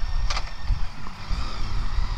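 Riding noise from a 2012 BMW K1600GT inline-six touring motorcycle on the move: wind rushing over the microphone over a steady, uneven low rumble from the bike and road, with one brief gust of noise about a third of a second in.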